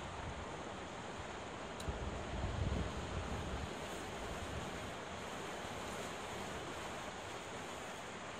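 Sea surf washing and breaking against rocks along a rocky shore, a steady roar of water noise. A louder low rumble swells about two seconds in and lasts around a second and a half.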